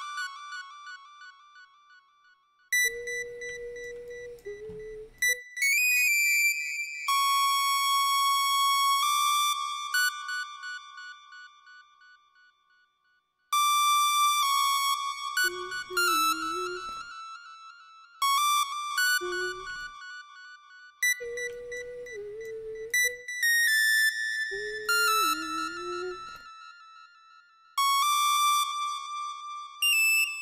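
Synthesizer melody played back from an FL Studio piano roll: a short phrase of bright, bell-like lead notes that ring and fade, over and over. A lower line with a wavering pitch joins in for a few stretches.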